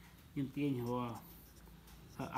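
A man's voice says one short phrase, with the light scratch of a pen writing on paper.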